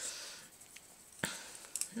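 Faint rustle of a paper ribbon being pulled tight around a bundle of cinnamon sticks, gathering the paper, with one sharp click just past a second in.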